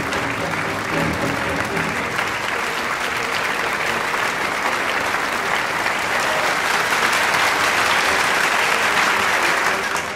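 Audience applauding steadily, swelling a little louder in the last few seconds, with music playing faintly underneath.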